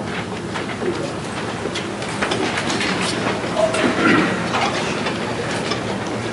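A roomful of people sitting down on chairs: shuffling, chair creaks and many small knocks and clicks, with a brief low murmur of voices about halfway through.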